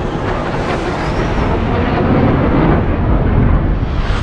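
Roar of an F/A-18 Super Hornet's jet engines as the fighter passes at speed in a film soundtrack. It is a dense, loud rush that grows louder toward the end.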